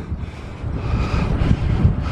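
Wind buffeting the microphone of a camera riding along on a moving bicycle: a rough, uneven low rumble that gusts louder in the second half.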